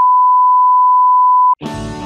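A steady, single-pitched censor bleep tone covering the presenter's outburst, cutting off suddenly about one and a half seconds in. Guitar music starts right after it, near the end.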